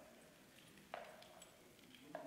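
Near silence: faint room tone with a single short, sharp knock about a second in.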